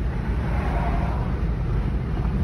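Steady low rumble of road and engine noise heard from inside a car's cabin while driving at highway speed.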